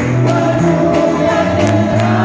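Congregation singing a Spanish-language hymn together in held notes, with tambourine strikes in time and guitar accompaniment.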